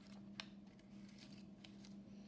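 Faint rustling and a few light ticks of card tags being handled and slid out of a paper pocket, over a steady low hum.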